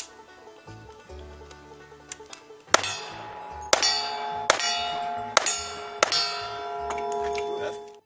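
A rapid string of about six gunshots, each followed by the ringing clang of a steel target being hit. They begin about three seconds in and come a little under a second apart.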